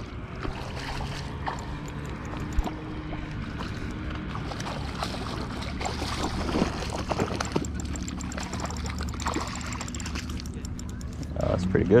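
A hooked trout splashing and thrashing at the water's surface as it is reeled in close to shore, with a steady low hum underneath.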